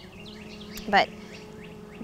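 Steady low hum of an open honeybee hive, the colony active again after the eclipse lull, with birds chirping faintly in the background.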